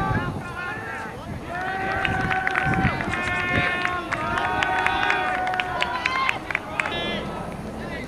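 Several people shouting long, drawn-out yells that overlap, from about a second and a half in until about six seconds in: players on the sideline calling out during an ultimate frisbee point. Short sharp clicks are scattered through the yelling.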